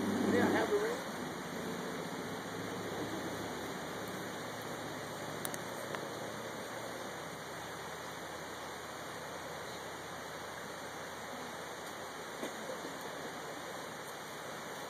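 Steady hiss of outdoor background noise, with a voice heard briefly in the first second.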